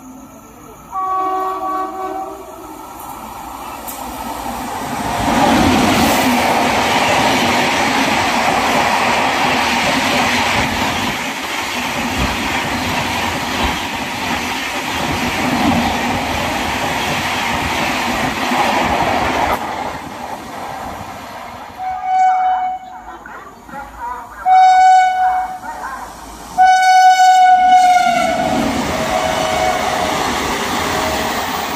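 An Indian Railways express train sounds its locomotive horn briefly about a second in, then passes through the station at speed with a loud, steady rush of coaches and wheels on the rails for about fifteen seconds. Later a second express passes sounding its horn three times, the last and longest blast dropping in pitch as it goes by, with the rush of its coaches continuing.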